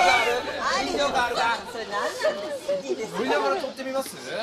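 Several voices talking over one another: overlapping chatter.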